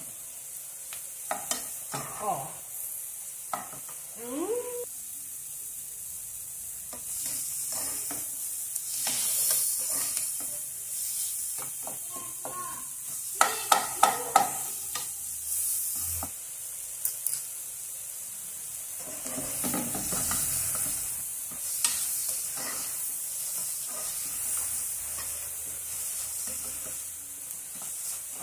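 Sliced leeks sizzling in melted margarine in a pan while a wooden spoon stirs them, scraping and knocking against the pan. There is a quick run of four sharp taps about halfway through.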